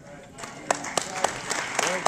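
Audience applause breaking out about half a second in: many scattered hand claps in a large hall.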